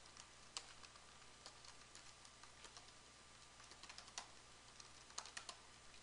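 Faint typing on a computer keyboard: scattered, irregular keystrokes as a short phrase is typed.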